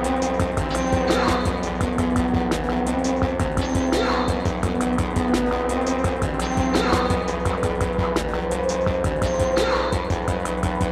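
Electronic music played live on synthesizers and electronic instruments: a fast, even ticking pulse over held drone tones, with a falling sweep recurring about every three seconds.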